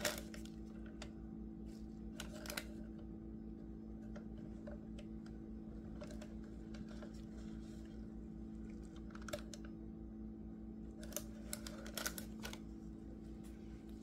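Faint, scattered clicks and taps of plastic being handled: a stir stick scraping thick resin out of a plastic mixing cup into a piping bag, over a steady low electrical hum.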